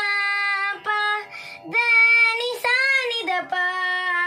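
A young girl singing a Carnatic nottuswaram in raga Shankarabharanam, sung on the swara syllables (sa, ri, ga, ma, pa). She holds each note and steps between them, with short breaks for breath.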